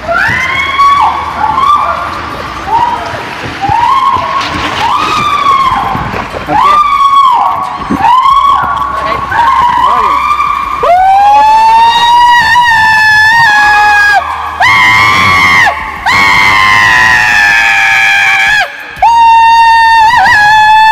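People screaming and whooping as they ride an inner tube down an enclosed tube water slide: short rising and falling shouts at first, then long, drawn-out screams through the second half.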